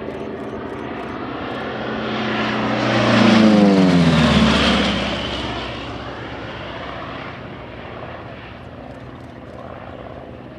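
Republic P-47D Thunderbolt's 18-cylinder Pratt & Whitney R-2800 radial engine and propeller in a low, fast flyby. The sound builds, is loudest about three and a half seconds in, drops in pitch as the plane passes, then fades as it pulls away.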